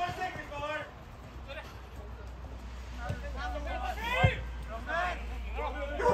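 Players and spectators calling out across an outdoor football pitch, over a steady low rumble, with one sharp thud about four seconds in.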